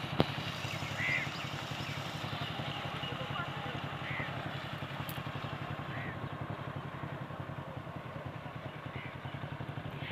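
A small engine-driven water pump running steadily with a fast, even beat, while water gushes from its outlet pipe into a pond. A few faint short chirps sound over it.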